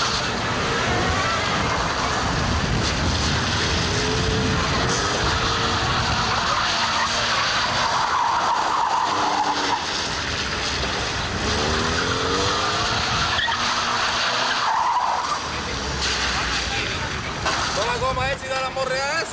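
A hatchback car's engine revving up and down as it is manoeuvred hard around a tight cone course, with tyres squealing in bursts about halfway through and again near the end.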